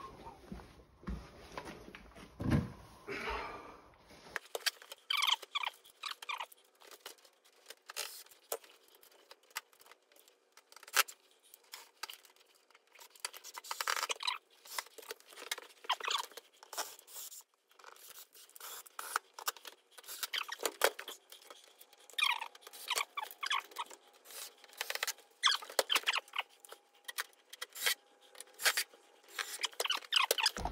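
Irregular clicking, scraping and rustling of hand work with tools and parts, with no motor clearly running.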